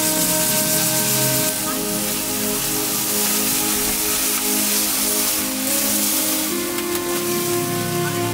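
Meat skewers sizzling on a grill grate over hot charcoal, a steady dense hiss, heard under background music with sustained tones.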